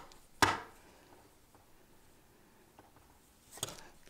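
Plastic pom-pom maker knocking lightly on a tabletop as yarn is pulled tight around it into a knot: one sharp click about half a second in, then a couple of fainter clicks near the end.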